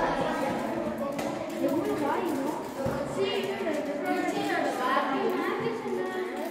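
Overlapping voices of children talking among themselves in a classroom, with no single clear speaker.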